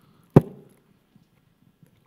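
A single sharp thump a moment in, with a brief low tail, typical of a handheld microphone being bumped as it is passed to an audience member; faint room noise otherwise.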